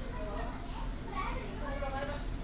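Several voices talking, children's voices among them, over a low steady rumble.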